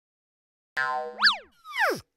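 Cartoon-style sound effects for an animated title: a held chord with a quick glide up and back down like a boing, then a second glide falling in pitch.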